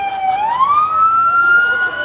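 Police car siren wailing: its pitch slides slowly down, swings back up about half a second in, then keeps climbing gently.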